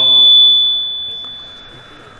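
A single steady high-pitched whistle from the public-address system, microphone feedback left ringing after the chanted phrase stops. It is loudest just after the voice breaks off, then fades away over about two seconds.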